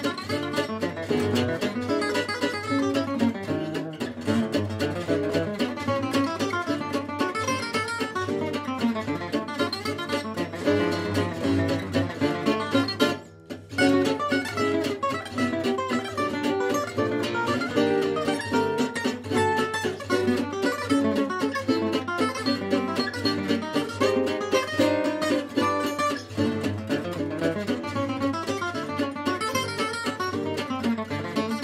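Two Selmer-style gypsy jazz acoustic guitars, an AJL 'Gypsy Fire' and an AJL '503 XO', playing a waltz together: a picked lead melody over chorded rhythm accompaniment. The music drops out for about half a second around 13 seconds in.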